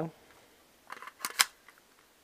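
AR-15 magazine pushed into a vz. 58 rifle's AR magwell adapter: a few light clicks and scrapes, then one sharp click about a second and a half in as the new magazine catch latches it.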